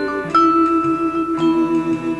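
Vibraphone playing: sustained notes ring with an even, pulsing vibrato from the instrument's motor-driven fans. A new chord is struck about a third of a second in, and more notes near a second and a half in.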